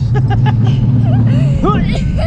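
Roller coaster train running along its steel track with a steady low rumble that drops away about three-quarters of the way through, over wind noise, with riders' short laughs and yelps.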